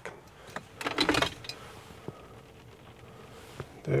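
Light handling noises inside a car cabin: a brief rustle about a second in and a few small clicks, with a faint steady hum in the middle.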